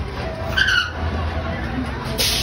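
Short high-pitched shriek from a swinging-boat ride's riders about half a second in, falling slightly. It sits over a steady low rumble of the ride in motion.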